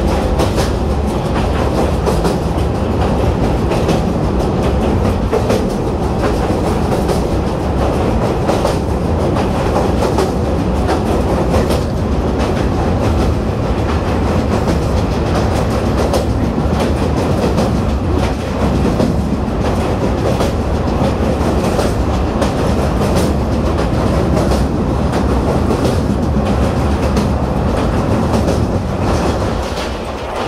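Passenger train running over a steel truss bridge, heard from on board: a loud, steady rumble of wheels on the rails with a continuous clatter of clicks. The rumble eases a little near the end as the train comes off the bridge.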